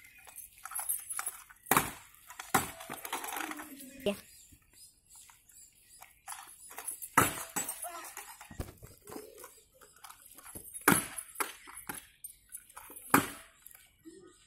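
Stunt scooter hitting asphalt, sharp clacks about seven times as tricks are landed or bailed, with quieter stretches between.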